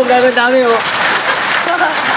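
Hail mixed with heavy rain pelting down on the ground and surroundings, a steady dense hiss.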